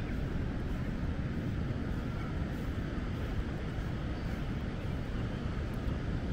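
Steady wind buffeting the microphone over the continuous wash of surf, heavy in the deep range.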